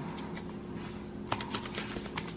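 Light scattered clicks and taps of fingers handling and turning seasoned salmon fillets on a paper plate, with a few sharper clicks in the second half.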